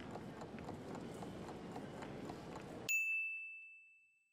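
Quiet background of light clatter and murmur that cuts off about three seconds in. A single high chime takes its place, rings briefly and fades: the time's-up signal ending the quiz countdown.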